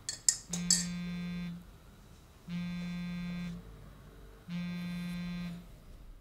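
A couple of spoon clinks against a ceramic mug, then a mobile phone's incoming-call alert: three identical steady buzzing tones, each about a second long, coming every two seconds.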